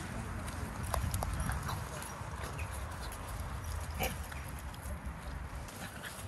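Footsteps crunching on a gravel-and-dirt path at a walking pace, with scattered short clicks and a steady low rumble on the microphone.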